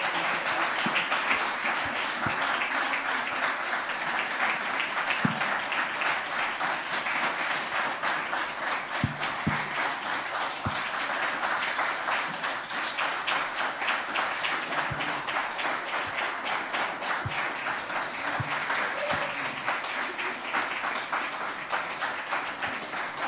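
Audience applauding: a long, steady round of many hands clapping.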